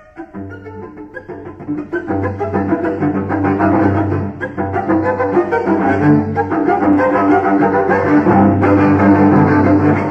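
Solo cello playing a modern classical passage. After a brief quiet moment it comes in on a held low note with busier notes sounding above, and it grows loud within the first two seconds.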